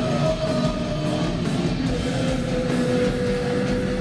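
Live metal band playing loud, with heavily distorted electric guitar; a single guitar note is held from about halfway through.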